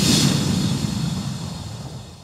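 Cinematic logo-reveal sound effect: a sudden noisy hit with a hissing shimmer over a low rumble, fading away steadily over about two and a half seconds.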